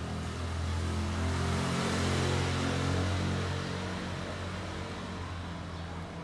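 A motor vehicle's engine going by: a low, steady hum with a hiss that swells over the first two or three seconds and then fades.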